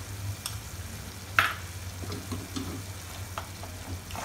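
A spatula stirring mashed boiled potato into a thick, gently sizzling tomato gravy in a pan, with soft scraping and small ticks. There is one sharp knock about a second and a half in, over a steady low hum.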